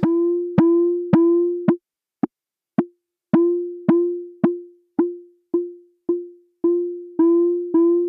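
A Frap Tools CUNSA bandpass filter rung by clock triggers: a pitched ping about twice a second, each a sharp knock that rings out on one steady low-mid note. As the filter's knobs are turned, the ring shrinks to short dry clicks about two seconds in, lengthens again, and shortens and grows once more toward the end, which shows what the character knob does.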